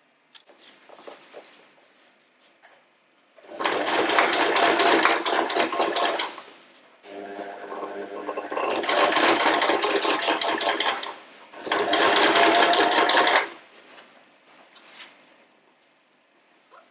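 Household electric sewing machine stitching a seam through cotton fabric and interfacing in three runs of a few seconds each, a quieter, slower stretch leading into the second. Light fabric handling before and after.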